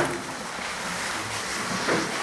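Steady, even hiss of room noise in a pause in speech.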